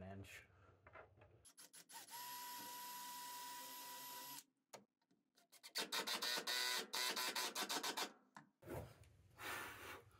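A cordless drill runs steadily at one pitch for about two seconds, boring a pilot hole in wood. Then a cordless impact driver rattles as it drives a quarter-inch pan-head screw into the wood, a longer burst followed by a short one near the end.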